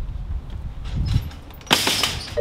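A metal security screen door swinging shut with one loud, brief clatter near the end, after a few soft thumps of steps on the porch.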